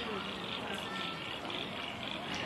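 Indistinct background chatter of several people's voices at a distance, over a steady outdoor hiss.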